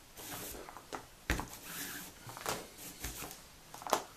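Paracord being pulled through the strands of a Turk's head knot on a pinned jig: rustling, sliding friction of cord against cord, broken by a few short handling clicks.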